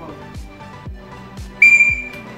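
A short, loud whistle blast, one steady high note lasting under half a second, near the end, over background music with a steady beat.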